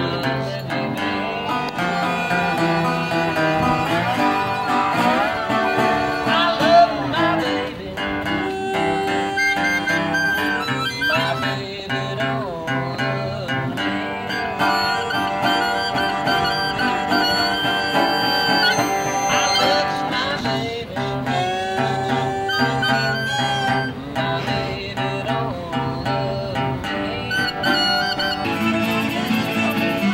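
Live acoustic jam: guitar, fiddle and harmonica playing a tune together without a break.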